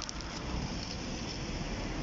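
Steady outdoor street background noise: a low rumble with an even hiss above it, with a few faint clicks just after the start.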